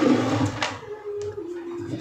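A stone bowl is brought onto a hard tabletop with a short scraping hiss and one knock about half a second in. Under it, a woman draws out a long hesitating "uh".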